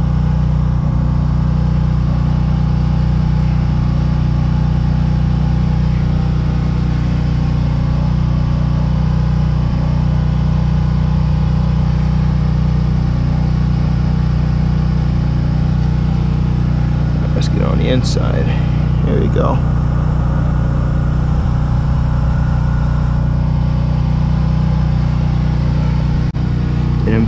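Steady low drone of an idling engine, unchanging throughout.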